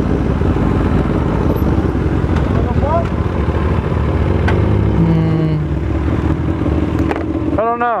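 Sport motorcycle riding at low speed through town, its engine running steadily under a loud rush of wind over the microphone.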